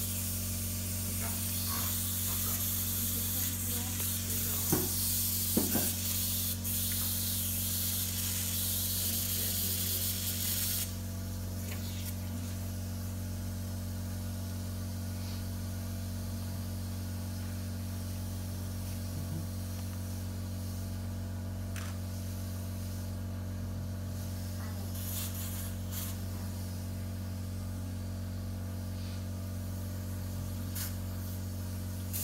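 Operating-theatre equipment: a steady hiss that cuts off suddenly about eleven seconds in, over a constant low electrical hum. A few clicks come in the first six seconds.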